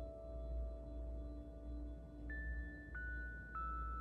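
Soft background relaxation music of ringing bell-like tones: one note sustains, then three higher notes are struck in the second half, each lower than the last, over a soft pulsing drone.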